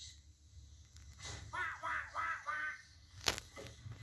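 A crow cawing about five times in quick succession, heard through a television speaker. A single sharp click follows near the end.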